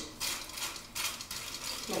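Tin foil crinkling and rustling under short, repeated strokes of a dye brush working bleach into hair.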